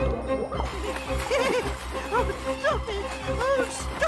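Cartoon background music with a steady low pulsing beat. From about a second in, a cartoon character's voice giggles in many short rising-and-falling bursts over a hiss of water.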